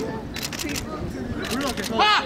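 A camera shutter firing a quick burst of about half a dozen clicks in under half a second, over voices calling.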